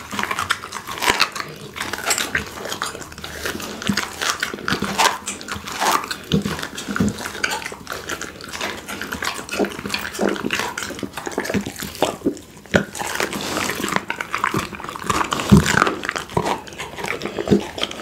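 A pit bull chewing a raw duck leg close to a microphone: wet, smacking bites with frequent irregular crunches of bone and gristle.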